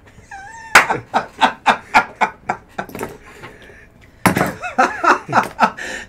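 Men laughing hard: a run of rhythmic laughs, about four a second, that trails off, then a second loud burst of laughter about four seconds in.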